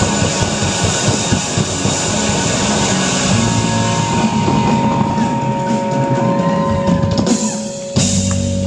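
Live rock band playing: a drum kit with a steady cymbal wash under electric guitars. From about halfway in, two steady high tones ring on over the drums, and the drums drop away just before the end.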